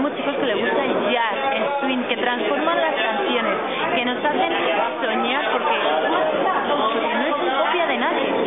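Several people talking at once: continuous overlapping chatter, with no other sound standing out.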